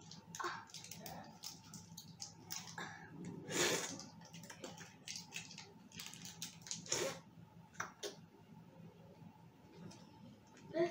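Plastic wrappers crinkling and crackling as they are pulled open by hand, in irregular quick clicks and rustles, with a louder burst about three and a half seconds in and another near seven seconds.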